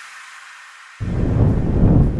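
The last of the electronic background music fades to a faint hiss, then about a second in, loud wind noise on the microphone cuts in suddenly.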